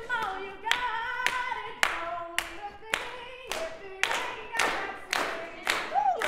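A woman singing unaccompanied while hand claps keep a steady beat of about two a second. Near the end her voice swoops up and back down.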